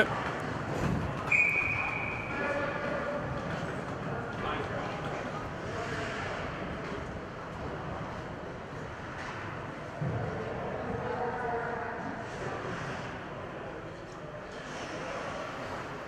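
Faint voices of people talking and calling out in a large indoor ice rink, over a steady low hum of the hall. A short, steady high tone sounds about a second in.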